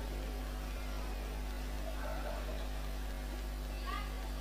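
Steady low electrical hum of a microphone and sound system between phrases of speech. A few faint short pitched calls rise and fall in the background, about two seconds in and again near the end.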